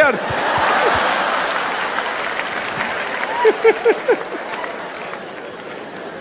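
Theatre audience applauding and cheering after a punchline. The applause is loudest about a second in and then slowly dies away, with a few voices calling out about halfway through.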